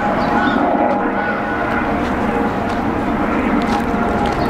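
Steady outdoor background rumble, with a few faint high chirps over it in the first second or so.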